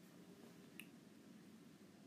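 Near silence: faint room tone with one soft click a little under a second in.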